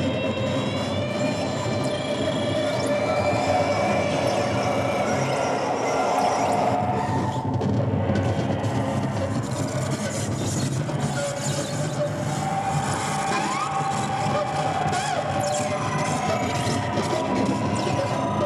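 Live experimental noise music played through a small amplifier, with the microphone held close to the performer's mouth. It is a dense, unbroken wash of distorted noise with wavering, sliding tones and squeals over it.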